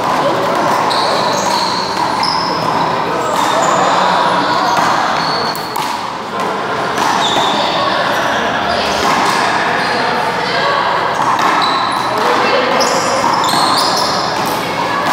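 A wall-ball game on an indoor handball court: the rubber ball repeatedly smacks off the wall and floor, with players' voices, all echoing in the large hall.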